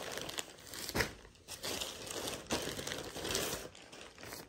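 Plastic packaging bags crinkling and rustling as clothing packets wrapped in clear plastic are handled and laid out, with sharper crackles about a second in and again midway.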